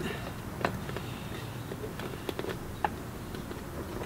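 A few faint, scattered clicks and taps of small plastic parts being handled: a zip tie being fed through a 3D-printed shoulder ring and the drilled holes in a fiberglass costume torso.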